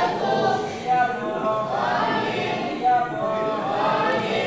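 A group of voices singing a devotional chant together, unaccompanied, in held notes that step up and down.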